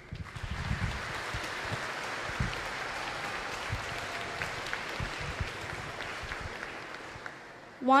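Audience applauding, starting right away and fading out near the end, with a few low thuds beneath the clapping.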